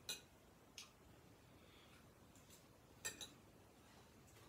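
Near silence broken by a few faint clicks and light knocks of small objects being handled: one at the start, one just under a second in, and a quick pair about three seconds in.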